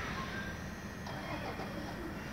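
Class 66 diesel locomotives, with their EMD two-stroke V12 engines, idling at a distance as a steady low rumble. A few faint short chirps sound above it.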